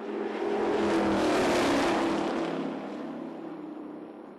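Two stock cars running side by side at speed pass by, engines swelling to a peak about a second or two in and then fading away.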